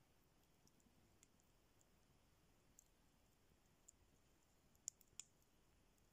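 Near silence: faint outdoor hiss with scattered faint, sharp clicks, the two loudest a moment apart about five seconds in.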